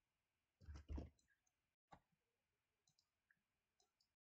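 Near silence broken by faint clicks from computer input as on-screen handwriting is selected and pasted: a sharper pair about a second in, another click about two seconds in, then a few lighter ticks.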